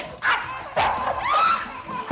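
Dog fight between a French bulldog and an English bulldog: short sharp barks and yelps, with pitched, bending cries near the middle.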